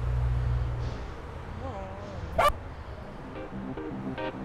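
A dog's short wavering whine followed by one loud, sharp bark about two and a half seconds in, over a low held bass note and then light pitched music.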